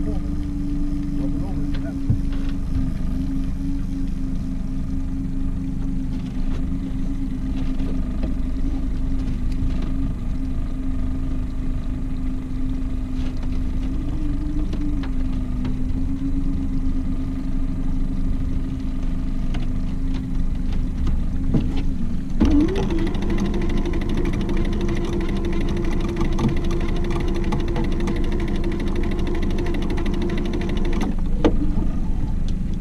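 Small outboard kicker motor running steadily at trolling speed with a low, even hum. About 22 seconds in, a higher, brighter electric whirring joins it: an electric downrigger winding its line and weight up.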